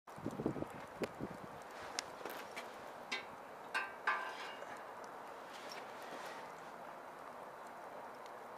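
Wood fire burning in a small steel stove, with a steady hiss and scattered sharp crackles. A few louder knocks and scrapes about three to four seconds in, as slices of bread are laid on the stove's metal grill rack.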